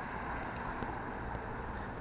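Steady outdoor noise with a low rumble of wind on the microphone.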